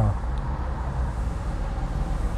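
Steady low rumble of a car on the move, engine and tyre noise without change.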